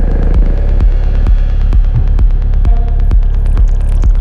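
Psytrance track with a steady four-on-the-floor kick drum, a little over two beats a second, and a deep rolling bassline filling the gaps between kicks. Synth effects sit on top, with a short held synth tone near the end.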